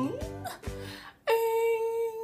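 Upbeat background music with a beat that stops about a second in, then a single steady note sung by a young woman's voice, held for about a second and a half.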